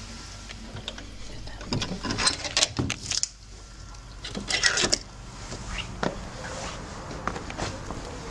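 A wooden-framed glass garden door being unlocked and opened: two clusters of sharp clicks and rattles, the first about two seconds in and the second near the middle, then a single click a second later.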